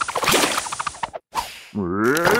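Cartoon sound effects: a rapid run of sharp snaps for about a second, a brief gap and a fading whoosh, then near the end a cartoon creature's cry that dips and rises in pitch.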